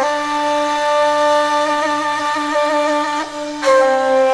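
Traditional-style music in which a wind instrument holds one long, slightly wavering note over a steady lower tone, then a new note begins just before the end.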